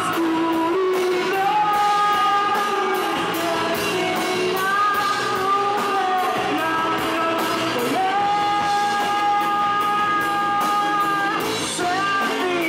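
Live band playing indie pop in a room: electric guitars, keyboard and drums, with singing that holds long, steady notes, the longest in the second half.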